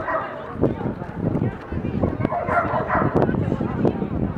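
A dog barking several times over the chatter of people talking in the background.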